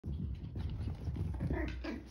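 A chihuahua puppy vocalizing at play, with a short pitched call near the end, over low rumbling noise.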